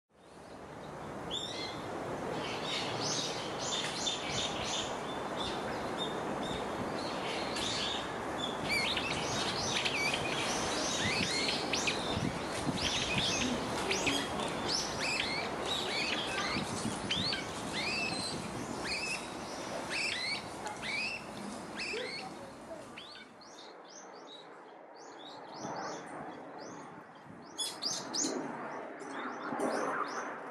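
Small songbirds chirping and calling over and over, many quick whistled notes, over a steady rush of water. The rush drops away about two-thirds of the way through, leaving the birdsong clearer against a quieter background.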